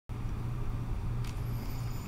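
Steady low background hum with a faint hiss, and one faint click a little past halfway.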